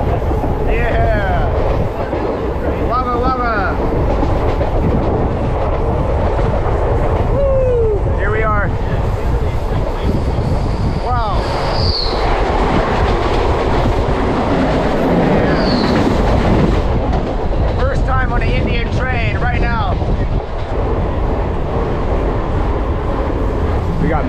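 Mumbai suburban local train running at speed, heard from its open doorway: a steady, loud rumble of wheels on rails mixed with rushing air. Short pitched whines rise and fall over it every few seconds.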